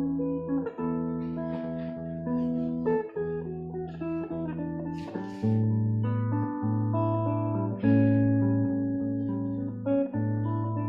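Solo guitar playing a slow piece: plucked notes ring out over held bass notes. A deeper bass note comes in about halfway through.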